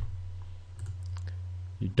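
A few faint computer mouse clicks about a second in, over a steady low hum.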